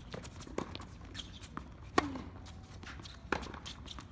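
Tennis rally on a hard court: a few sharp pops of the ball off racquets and the court, the loudest about two seconds in, with fainter footsteps and shoe scuffs from the players moving between shots.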